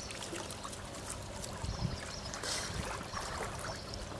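Water lapping and trickling at the surface, steady and fairly quiet, with faint scattered ticks and small splashes.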